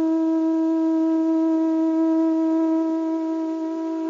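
A conch shell (shankha) blown in one long, steady note.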